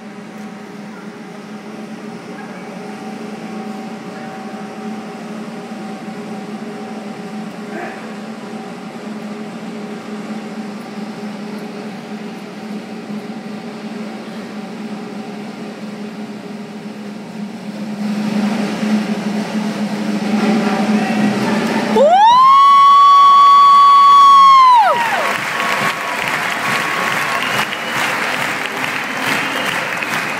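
Accompanying music builds slowly under a circus acrobatic act. The loudest event is a single high held tone that slides up, holds for about three seconds and slides back down at the trick's climax. Audience applause and cheering follow.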